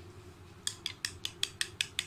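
Steel spoon clinking against a small ceramic bowl while beating eggs, quick regular clinks about five a second, starting about two-thirds of a second in.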